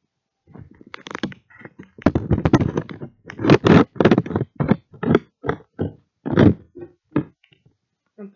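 A string of irregular knocks, thumps and scrapes close to the microphone: handling noise as a phone camera is carried and set down.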